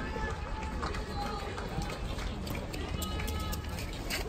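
Several people talking at a distance, their voices faint and overlapping, over a steady low rumble.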